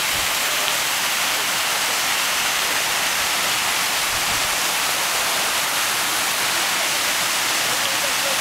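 Grand Cascade fountain jets spraying and splashing into the water of their basins: a steady rushing hiss of falling water.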